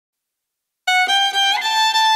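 Song intro: silence, then about a second in a solo bowed-string melody begins, stepping up through three notes to a held one.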